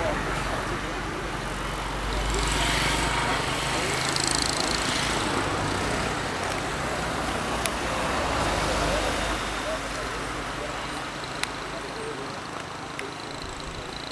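Street noise with people talking and a vehicle engine running, its low rumble easing off in the last few seconds. A couple of sharp clicks are heard along the way.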